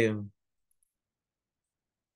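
A man's voice trails off in the first moment, then near silence as the call audio cuts out completely, broken only by one faint tick under a second in.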